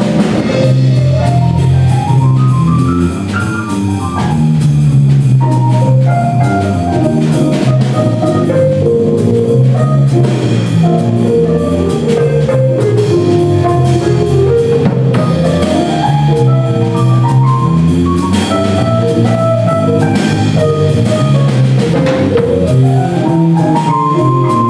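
Live jazz combo of electric keyboard, drum kit and electric guitar playing, the drums keeping a steady groove under fast runs of notes that climb and fall.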